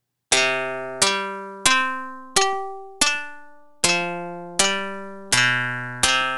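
Karplus-Strong plucked-string synthesis in a Max/MSP patch, with white-noise bursts fed through a feedback delay line. It plays eight guitar-like plucked notes at different pitches, about one every 0.7 s, each with a sharp attack and a ringing decay.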